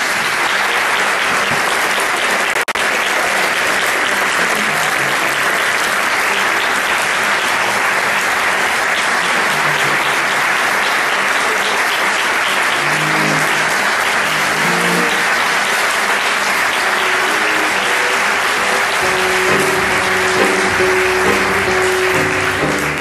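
Audience applauding steadily and densely throughout. Faint instrument notes come through under the clapping in the second half, with a held note in the last few seconds.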